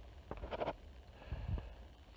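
Handling noise on a handheld phone's microphone: scattered soft knocks and a low rumble, with a short breath-like rush about half a second in.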